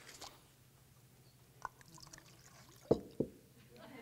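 White wine being poured into a glass: mostly quiet, with a few short, faint liquid drip and splash sounds, the loudest near the end.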